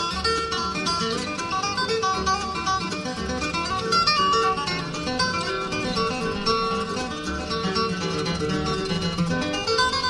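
Live acoustic bluegrass band playing an instrumental break with no singing: picked acoustic guitar over a bass line.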